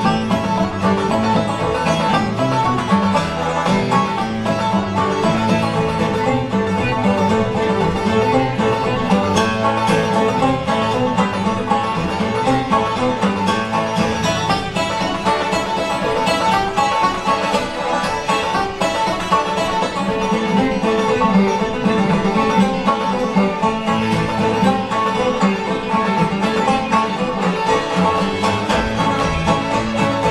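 Live acoustic string band playing an instrumental tune together: banjo and acoustic guitar picking with several fiddles and a piano, at a steady, even rhythm.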